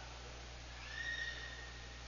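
A faint, thin high tone lasting about a second near the middle, over a steady low electrical hum.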